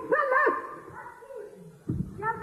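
Wordless human vocal sounds, short yelps and moans whose pitch bends up and down. A quick cluster comes in the first half second, fainter sounds follow, and another yelp starts just before the end.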